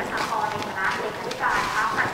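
Low, indistinct voices of several people talking, with footsteps of people in sandals walking on a paved path.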